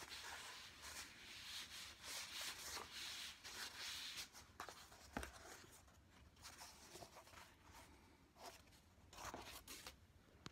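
Faint rubbing and rustling of EVA floor-mat foam pieces being flexed and handled by hand, strongest in the first few seconds, with a few light knocks as the pieces are set down on a cutting mat.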